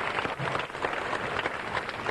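Audience applauding: many hands clapping in a steady, dense spread of claps.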